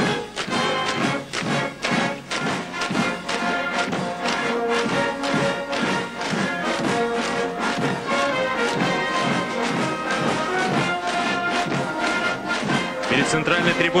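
Military brass band playing a march with a steady beat.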